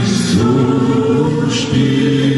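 Music with a group of voices singing long held notes, with two short hissing sounds like sung consonants.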